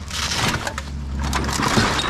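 Empty aluminium cans and plastic bottles crunching and clattering as a pair of roof rack bars is laid down on top of the load.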